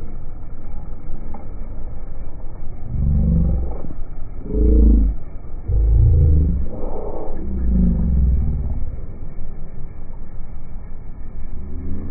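A car engine revving in several short blips, each a deep rising rumble, between about three and nine seconds in, over a steady low rumble.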